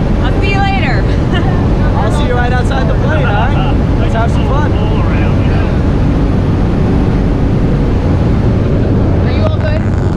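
Loud, steady drone of a light aircraft's engine and propeller heard inside the cabin, with people's voices over it, mostly in the first half.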